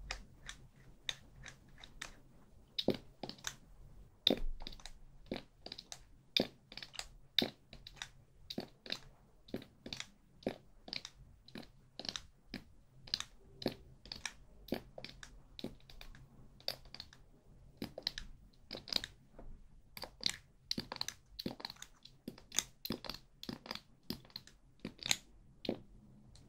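Close-miked crisp clicks and crackles, about two or three a second in an irregular run, with no words over them.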